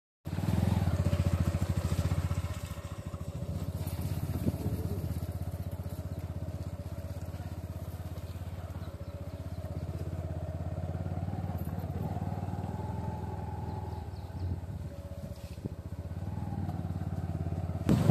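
Motorcycle engine running steadily at low speed, louder for the first couple of seconds and then settling to an even note.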